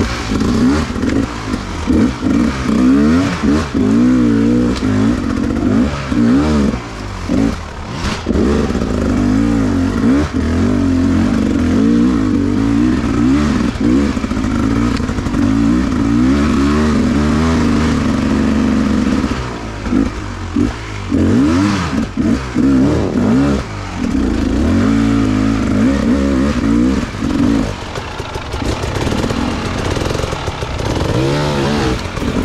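Beta enduro dirt bike's engine recorded from the rider's onboard camera, its revs rising and falling constantly as it is ridden over rough trail, with clatter from the bike. The throttle is briefly closed a few times, around twenty seconds in and again near the end.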